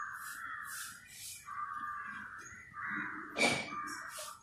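A bird calling in the background, a run of long rasping calls one after another.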